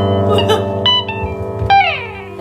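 Live instrumental accompaniment: a held keyboard chord under a few plucked electric guitar notes, with a note bent or slid downward near the end.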